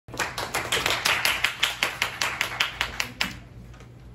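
Applause of clapping hands, sharp and fairly regular at about five claps a second, dying away after about three seconds.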